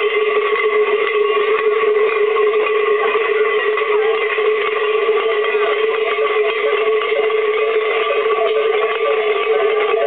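Many large cowbells (cencerros) strapped to carnival dancers' costumes, clanging continuously as they move, in a dense jangle that never lets up.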